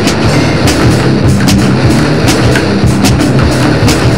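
Loud crossover metal music: an electric bass riff driving under drums, with sharp drum and cymbal hits several times a second and no singing.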